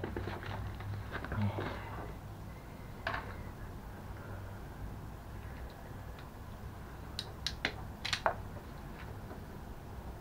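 Hands working wiring with a blue-handled hand tool: light rustling and handling noises, then a quick run of sharp clicks between about seven and eight seconds in, over a low steady hum.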